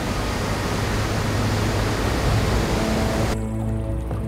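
Steady, loud rush of a large waterfall. A little after three seconds in it cuts off abruptly, leaving quiet music of long held notes.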